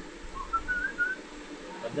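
A person whistling a few short notes that step upward in pitch over about a second, starting about half a second in.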